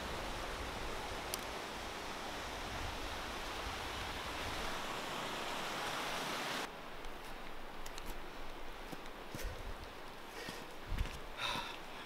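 Creek water rushing steadily, cutting off abruptly about two-thirds of the way through. Quieter rustling and light knocks follow.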